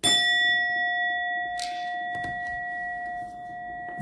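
A bell-like metallic tone is struck once at the start, with several clear high overtones. It rings on steadily and fades slowly.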